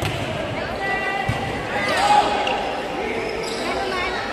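A ball bouncing a few times on the hard court floor of a large gym hall, over the chatter of spectators and players.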